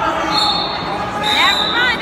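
Shouting voices in a large echoing gym. A steady high-pitched tone sounds twice, briefly and then for almost a second.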